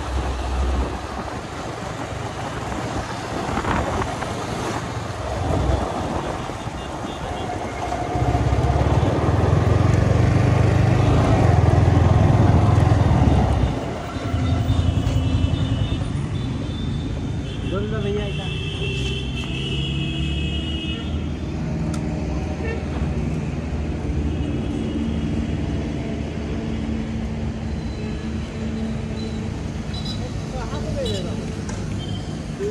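Yamaha R15 V4 motorcycle's single-cylinder engine running as the bike is ridden on the road, louder from about eight seconds in. About halfway through it drops to a steady idle.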